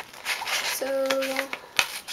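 Scissors cutting into a sheet of paper, with a sharp snip of the blades closing near the end.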